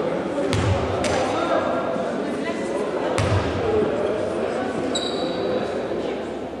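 A basketball bounced twice on the hardwood gym floor, about two and a half seconds apart, as a player readies a free throw, with voices echoing around the hall. A brief high-pitched tone sounds near the end.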